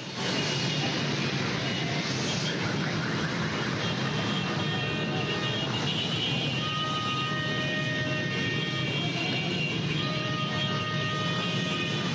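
Street noise of motorcycles and a crowd, recorded on a mobile phone: a loud, dense, steady din, with a few steady high tones sounding in the second half.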